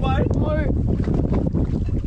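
Wind buffeting the microphone on an open boat at sea, a steady low rumble throughout, with a voice calling out briefly at the start.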